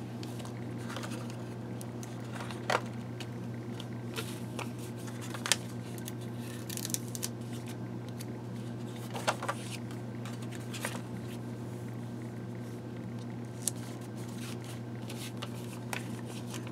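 Paper stickers being peeled from their backing and pressed onto journal pages: a few short, crisp paper rustles and taps, spaced seconds apart, over a steady low hum.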